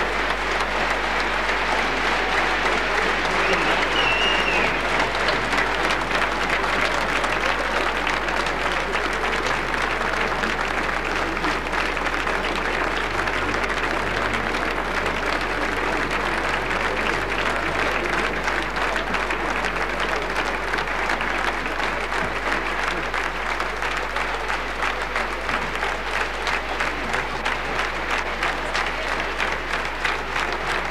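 Large concert audience applauding, with a short whistle about four seconds in. The clapping eases slightly toward the end.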